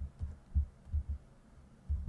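Typing on a computer keyboard, heard only as a series of dull low thumps, about six in two seconds.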